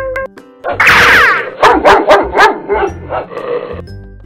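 Sound effect of a dog yelping once, then barking in a quick run of short barks, over light background music.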